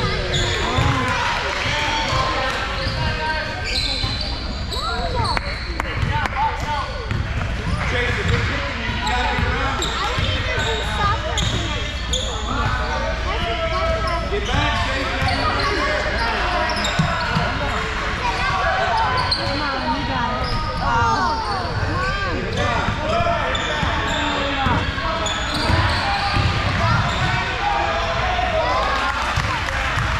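Youth basketball game in a gym: a basketball bouncing on the hardwood court, sneakers squeaking, and indistinct voices of players and onlookers carrying through the echoing hall.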